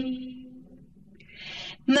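Pause in melodic Quran recitation: the long held final note of a verse dies away in the room's echo, then the reciter takes a quick breath about a second and a half in, and the chanting of the next verse starts right at the end.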